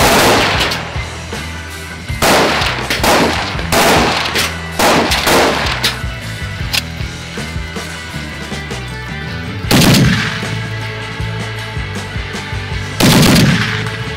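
Tripod-mounted heavy machine gun firing short bursts, several close together in the first six seconds and two more about 10 and 13 seconds in.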